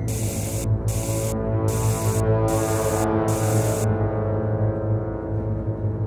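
A dark, steady droning music bed with a strong low hum. Over it come five short aerosol spray-can hisses in quick succession during the first four seconds, one for each graffiti slogan sprayed onto the wall, after which the drone carries on alone.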